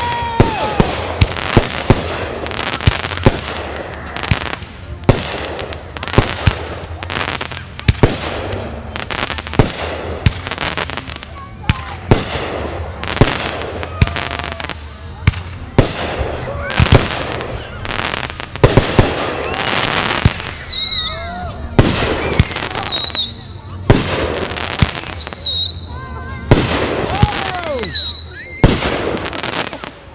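Fireworks display: aerial shells bursting in a rapid, irregular run of sharp bangs, several a second. From about two-thirds of the way through, high whistles falling in pitch come every second or two among the bangs.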